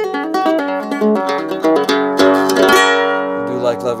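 Yamaha guitalele in open G tuning (GDGDGB) playing a quick run of picked notes. A voice starts singing near the end.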